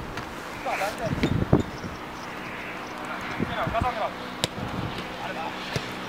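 Players shouting to each other from across a small artificial-turf football pitch during play, with one sharp knock a little over four seconds in.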